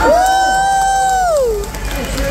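One person's long, high-pitched cheering whoop, held about a second and a half and falling in pitch at the end, over audience cheering as a stunt performer is introduced.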